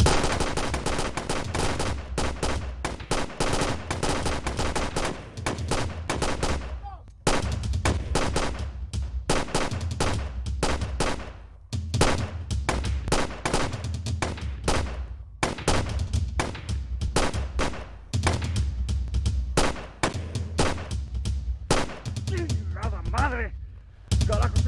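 Sustained gunfire from several handguns: many shots in quick succession with a low thud under each volley, broken by brief lulls about seven and twelve seconds in.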